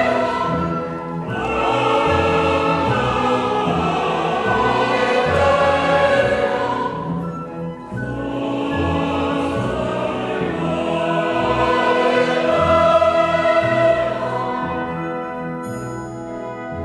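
Choir and orchestra performing sustained choral chords from an oratorio. The sound dips briefly about halfway, swells again, then eases off near the end.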